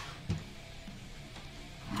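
Faint background music with guitar, and a short knock about a third of a second in.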